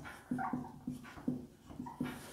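Whiteboard marker squeaking against the board while letters are written: about six short, pitched squeaks, one for each pen stroke, roughly three a second.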